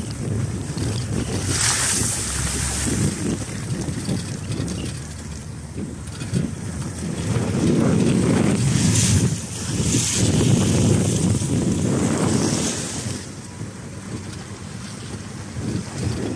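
Wind buffeting the microphone: a low, rushing roar that swells and eases in several gusts.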